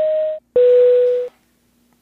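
Two-note airliner cabin chime, a higher tone then a louder lower one, over a faint hiss. It stops about a second and a quarter in, leaving only a faint hum.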